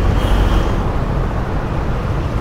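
Steady street traffic noise: a continuous low rumble of passing vehicles, with a faint brief high whine near the start.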